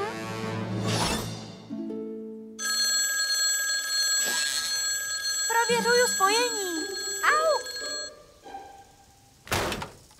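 A mobile phone rings with a steady electronic tone for about five seconds. Over its second half, a little girl's sing-song voice rises and falls. A short thump comes near the end.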